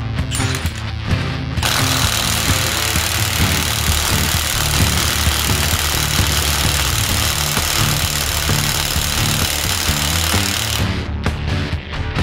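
Milwaukee M18 FUEL brushless mid-torque impact wrench hammering on a car wheel's lug nut. It starts about a second and a half in and runs for about nine seconds, stopping shortly before the end, over background music with a steady beat.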